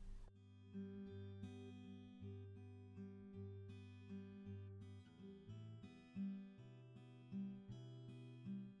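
Quiet background music: an acoustic guitar picking a slow run of single notes.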